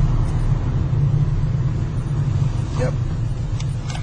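A car's engine and road noise heard from inside the cabin while it is driven: a steady low rumble.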